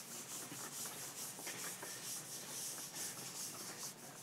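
Felt blackboard eraser rubbing chalk off a slate board in rapid, even back-and-forth strokes, a faint scrubbing hiss.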